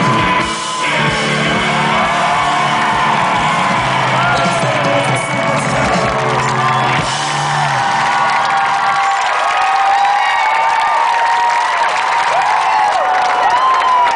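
A live rock band with electric guitar plays the final bars of a song and stops about nine seconds in, while a festival crowd cheers, whoops and whistles, carrying on after the music ends.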